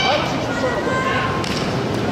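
Indistinct voices calling out over a steady background din.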